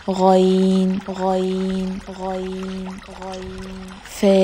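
A pitch-altered, flat-sounding voice saying the Arabic letter name "ghain" four times, each drawn out for about a second.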